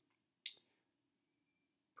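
Near silence, broken once about half a second in by a single short, sharp high-pitched click.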